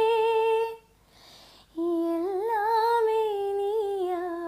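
A woman singing solo, without words: she holds a long high note, breaks off for under a second, then comes back on a lower note that climbs and wavers in ornamented turns.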